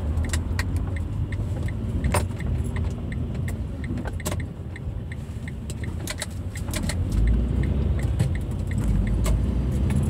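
Inside a moving car: steady low engine and road rumble, with frequent light clicks and rattles from something loose in the cabin.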